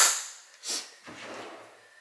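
A sharp click at the start, then a brief hiss-like burst under a second later and faint handling noise.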